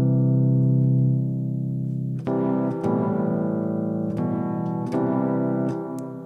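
Electric piano patch in MainStage played from a keyboard controller: held chords, with a new chord struck about two seconds in and a few more note changes after, fading near the end.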